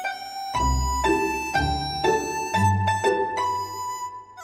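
Orchestral music blending Chinese folk instruments with strings: plucked and bowed string notes, with a new chord and a low bass note about once a second.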